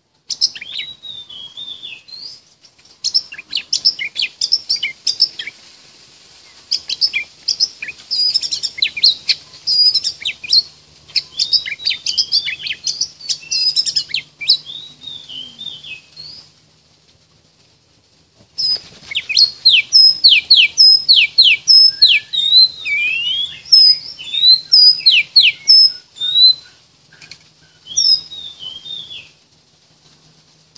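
Oriental magpie-robin singing: a long, varied song of clear whistles, quick repeated notes and down-slurred phrases, with a break of about two seconds a little past halfway before a louder run of phrases.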